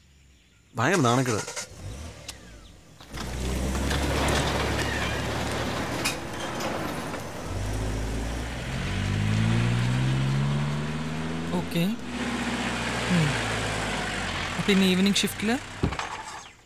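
Small car driving along a road: a steady engine rumble over tyre noise, with the engine note rising as it accelerates from about eight seconds in.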